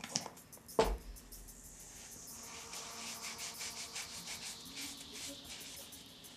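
Soapy wet paper towel rubbing over painted skin in quick repeated strokes, wiping off metallic face makeup. A single sharp knock sounds about a second in.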